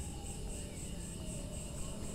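Crickets chirping steadily, a high pulsing trill about four times a second, over a low background hum.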